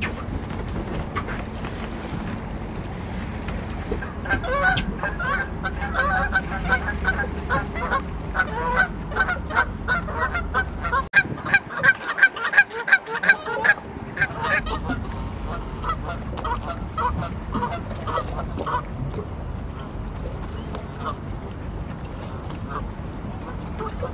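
Canada goose honking in a long series of short, rapid calls that start a few seconds in, grow loudest in the middle and thin out toward the end. Underneath runs a low steady rumble that cuts out for a few seconds midway.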